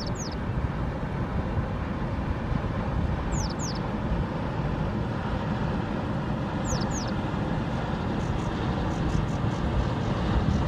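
Riverside ambience: a steady low rumble of wind and water. Over it, a bird gives a quick double descending whistle three times, about every three and a half seconds.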